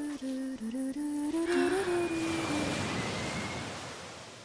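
Soft soundtrack melody: a low voice humming a few slow, stepping notes. About halfway in, a rushing gust of wind swells beneath it and then fades away.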